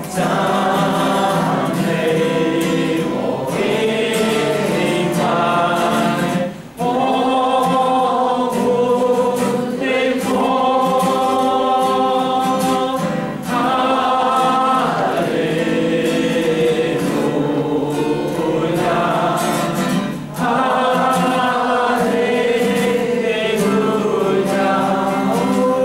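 A congregation singing a hymn together, led by a man's voice through a microphone with an acoustic guitar accompanying. The singing moves in long phrases, with short breaths between them about every seven seconds.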